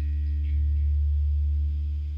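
A deep bass note held steady and loud by an amplified rock band, with faint higher tones ringing above it and no drums, easing off slightly near the end.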